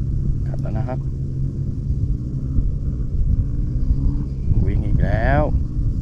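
A steady low drone with a man's voice over it, briefly at the start and in a short drawn-out exclamation about five seconds in.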